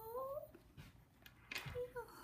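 Yorkshire terrier puppy giving a short whine that bends up in pitch at its end, in the first half second, followed by a soft knock about a second and a half in.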